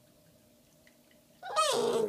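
Shiba Inu puppy "talking": a loud, drawn-out vocal call that starts about one and a half seconds in, wavers, and slides down in pitch.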